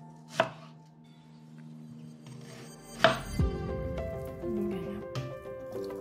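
Knife slicing through an onion and striking a wooden chopping board: two sharp chops, about half a second in and about three seconds in.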